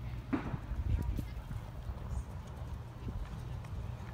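Hoofbeats of a horse cantering on a sand arena, faint, over a steady low rumble, with a brief voice call about half a second in.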